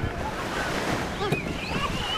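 Small waves washing up onto a sandy beach, one wash swelling and falling away about a second in, with wind rumbling on the microphone.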